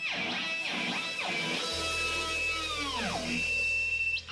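Improvised noise-rock electric guitar playing swooping, sliding pitch bends, with one long downward glide about three seconds in and a held high tone near the end. A low steady drone sets in a little before halfway.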